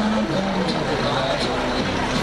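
A car driving slowly past close by at low speed, towing a trailer, with people talking around it.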